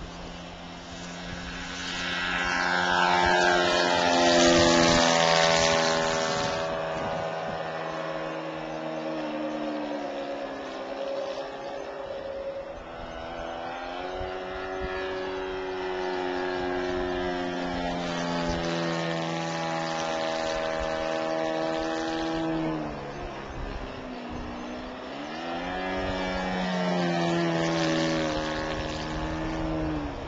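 Engine of a SeaGull Decathlon radio-controlled model airplane opening up for takeoff and running hard in flight. It swells about a second in and is loudest a few seconds later. Its pitch then rises and falls several times as the throttle changes and the plane passes.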